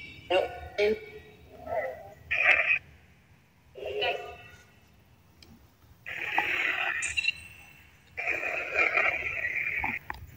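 Crackly electronic static: broken, speech-like fragments in the first few seconds, then two longer bursts of hiss, described as crackly reverb and a lot of white noise coming through.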